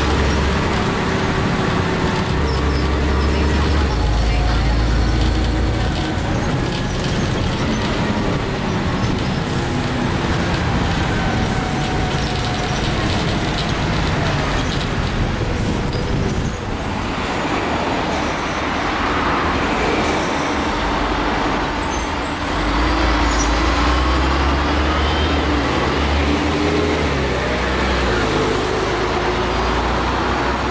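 Cummins LT10 diesel engine of a 1993 Leyland Olympian double-decker bus running on the road, heard from inside the saloon, with a low drone that steps up and down as engine speed changes. The sound changes character about halfway through.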